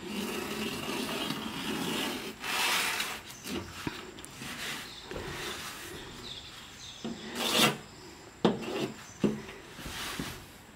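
Knife blade slitting fresh banana leaves along the midrib: a continuous rasping, rustling scrape of steel through leaf. There are louder swishes about two and a half seconds in and again past seven seconds, and two sharp clicks near the end.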